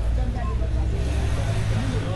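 Steady low hum of a motor vehicle engine running, with faint voices in the background.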